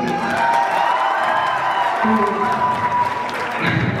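Audience clapping and cheering in a hall, with music playing over the sound system.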